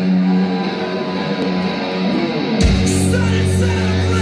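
Live rock band with amplified electric guitars: a held guitar chord rings on its own, then about two-thirds of the way through the drums, bass and full band crash in together.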